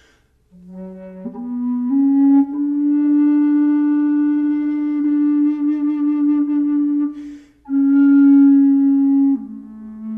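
Grenadillo-wood side-blow bass flute in F#, played slowly. After a quick breath, notes step up from the low tonic into a long held note that wavers with vibrato partway through. After another audible breath comes a further note, which drops to a lower one near the end.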